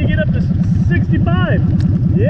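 Honda Shadow 750 Aero's V-twin engine idling at a stop, a steady rapid low pulsing.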